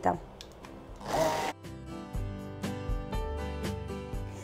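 An immersion blender's motor whirs briefly about a second in, puréeing farmer cheese with powdered sugar. Soft background music with a steady beat follows.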